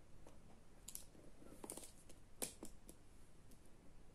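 Near silence broken by a few faint, sharp plastic clicks as baby pacifiers are handled and swapped, the loudest about two and a half seconds in.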